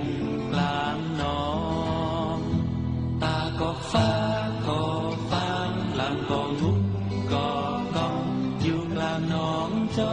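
A Thai-language folk-style pop song: a sung vocal in short phrases over instrumental backing with sustained low bass notes.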